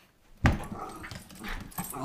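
Miniature schnauzer tussling with a large rubber ball on a hardwood floor: a sudden thump about half a second in, then irregular scuffling and rubbing as the dog grapples with the ball, with short dog noises mixed in.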